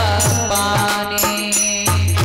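Live Hindi devotional bhajan music. A woman's sung line ends at the very start, then the accompaniment carries on with steady held notes over a regular drum beat.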